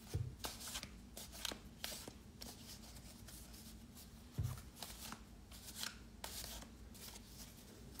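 Deck of MAC (metaphorical associative) cards being shuffled by hand: faint, irregular clicks and riffles of card against card, with soft low thumps at the start and about four seconds in.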